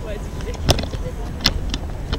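Outdoor ambience: a steady low rumble with faint distant voices, and sharp clicks about a third of the way in and again about three quarters in.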